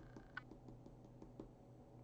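Near silence: faint scratching and light ticks of an oil pastel stick drawing a small oval on paper, with one sharper click about a third of a second in.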